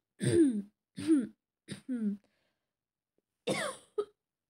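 A woman with a cold clearing her throat and coughing: three rough, falling-pitched coughs in quick succession, a pause of about a second, then one more near the end.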